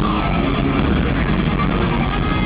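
Metal band playing live at full volume: distorted electric guitar over drums, a dense, steady wall of sound.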